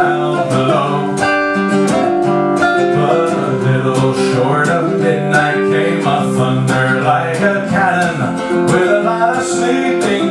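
Archtop guitar strummed in a steady rhythm as the accompaniment to a folk-style song.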